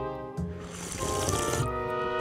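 Water sipped from an aluminium can held close to the microphone: a hissing slurp starting about half a second in and lasting about a second, over steady background music.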